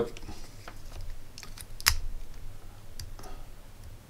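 Light plastic-and-metal clicks of small electronics being handled, with one sharper click about two seconds in as the homemade USB discharger's USB plug is pushed into a USB cable socket.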